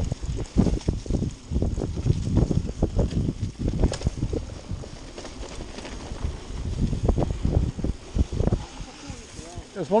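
Wind buffeting the camera microphone on a mountain bike riding fast down a dirt trail, with uneven low bumps and rumble from the bike over rough ground. A man's voice starts at the very end.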